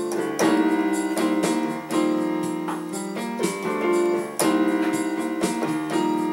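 Portable electronic keyboard played on a piano voice: full chords struck and held, with a new chord about half a second, two seconds and four and a half seconds in.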